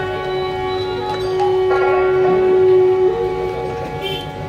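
Instrumental passage of a Bengali devotional kirtan ensemble, with harmonium, flute and violin playing together. It holds one long note for about three seconds, then steps up to a higher note near the end.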